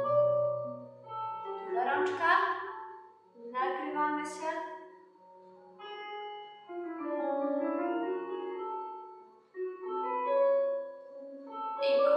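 Piano music playing: a classical accompaniment for a ballet class's floor exercises, with held notes changing every half second or so.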